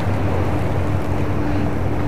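Steady low mechanical drone, with a faint higher hum held from about half a second in.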